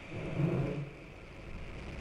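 Low rumble of an Atlas V rocket at ignition and liftoff, its RD-180 main engine and strap-on solid rocket motors firing. There is a brief swell about half a second in, and the deep rumble builds toward the end.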